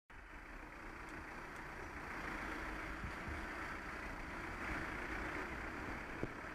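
Steady traffic noise from a car driving slowly just ahead, mixed with the even rush of air on a moving bicycle's camera microphone.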